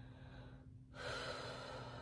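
A woman drawing a long, soft breath in through the nose and mouth, starting about a second in after a short quiet gap.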